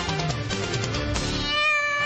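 Opening theme music of a TV talk show, with a cartoon cat's meow sound effect held over it near the end.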